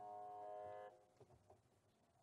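The last held note of a Carnatic devotional prayer song, sung in unison, ends about a second in, followed by a few faint knocks in near silence.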